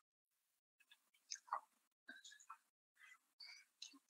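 A faint voice, whispering or speaking very low, in short broken bursts with dead silence between them.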